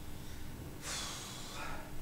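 A man's single forceful breath of exertion during weighted pull-ups, about a second long, a little under a second in.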